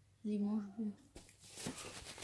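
A child's short voiced hum, a held "mmm" with no words, followed by light rustling of a small snack packet being handled.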